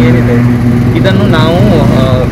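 A steady low engine-like hum holding one pitch, with a man's voice starting about a second in.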